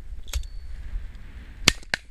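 Shotgun shots at a game shoot: a sharp report about a second and a half in is the loudest, with fainter shots near the start and just before the end. Wind rumbles on the microphone throughout.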